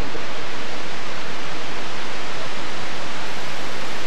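Loud, steady hiss of video-tape static, cutting in abruptly right after a word: a blank, signal-less stretch in an old VHS recording of television.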